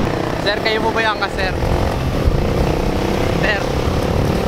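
Loud, steady street traffic noise of running vehicle engines, with a steady engine hum setting in about two seconds in, under a few spoken words.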